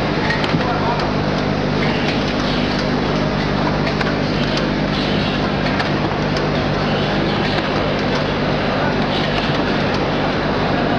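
Automatic tube-cartoning and overwrapping packaging line running steadily: a continuous mechanical din with a low hum and light scattered ticks, over a background of voices.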